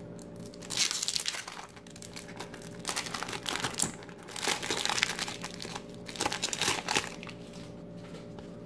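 Plastic wrapper of a 1993 Fleer football card pack crinkling and tearing as it is peeled open and the cards are pulled from it, in about four short bursts.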